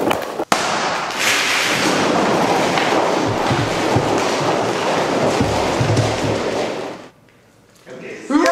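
Hundreds of small rubber super balls raining onto a hard floor and bouncing, a dense crackling clatter that dies away suddenly about seven seconds in.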